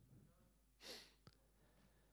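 Near silence in a lecture hall: faint distant speech, then a short breathy rush of noise about a second in, followed by a single click.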